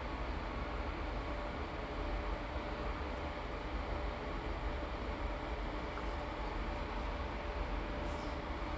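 Steady background hum and hiss of room noise, with a faint steady tone and a few faint ticks.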